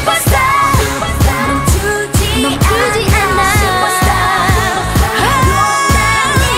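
K-pop girl-group song: female voices singing, several notes held for about a second, over a steady drum beat.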